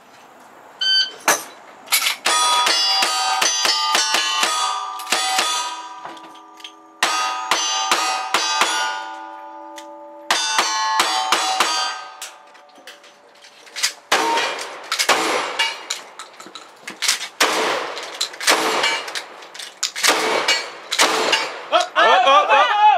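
Single-action revolver shots fired in quick succession, each hit followed by the ringing of struck steel plate targets, lasting about twelve seconds. After a short pause, a second string of gunshots follows, with little ringing after the hits.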